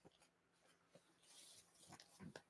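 Near silence: room tone with a faint low hum and a few faint soft clicks.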